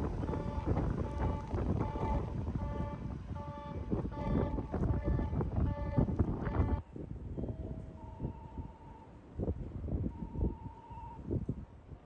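Electric commuter train pulling out of the platform and moving away. Its running noise, with some steady tones in it, drops off sharply about seven seconds in. After that only quieter background noise and a few faint tones remain.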